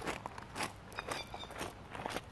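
Footsteps crunching on a gravel road, about two steps a second.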